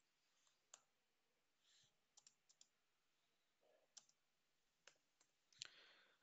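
Near silence broken by faint, scattered clicks of computer keys and a mouse, about nine separate clicks with the loudest near the end.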